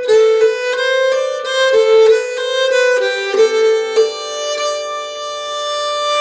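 Nyckelharpa (Swedish keyed fiddle) bowed slowly through a phrase of a polska tune: a run of separate notes a few tenths of a second each, easing into longer notes and a note held near the end.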